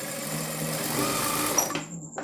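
Industrial single-needle lockstitch sewing machine running steadily as it stitches piping onto fabric, stopping shortly before the end.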